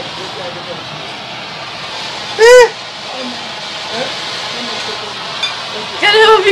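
Gender-reveal smoke cannon hissing steadily as it pours out coloured smoke. About two and a half seconds in comes one short, loud, high excited cry of "ah!"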